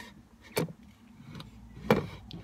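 Handling noise: short sharp clicks over low room noise, one about half a second in and a louder one near the end, as things are picked up and moved about close to the microphone.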